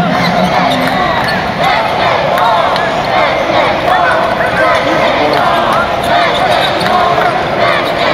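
Basketball dribbled on a hardwood court, with many short squeaks of sneakers on the floor over steady crowd chatter in a large arena.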